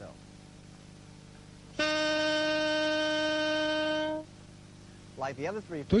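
Saxophone sounding a single sustained C, fingered with the left hand's second key, for about two seconds at a steady pitch before stopping cleanly.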